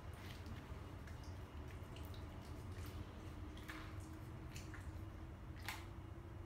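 Small dog eating from a small metal bowl: irregular chewing clicks and taps of food against the bowl, with one louder click near the end.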